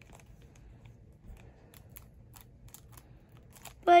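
Small scissors snipping into a foil Pokémon card booster pack: a series of faint, short snips and clicks.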